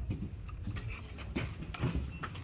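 Close handling noise: a few short rustles and taps of a plastic-and-card blister pack being held against a wire display rack.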